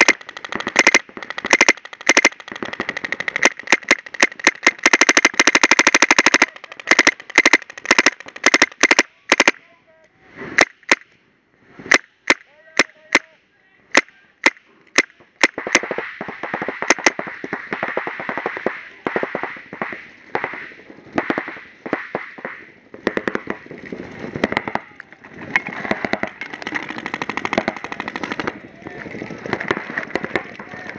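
Paintball markers firing in rapid strings of shots, dense for about the first six seconds, then scattered single shots, with firing picking up again about halfway through.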